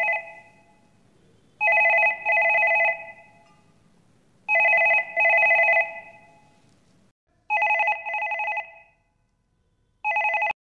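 A telephone ringing in a double-ring pattern: a pair of short warbling rings about every three seconds. One ring is ending at the start, followed by three full pairs.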